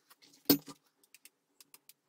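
Objects handled on a work table: one sharp clack about half a second in, a lighter one right after, then faint scattered ticks, as cardboard pieces are put down and a plastic hot glue gun is picked up.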